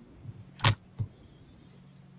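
A small object set down on a wooden desk: two sharp knocks about a third of a second apart, the first louder, over a low steady hum. A faint high whine follows.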